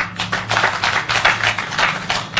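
An audience applauding, a dense run of clapping that breaks out suddenly.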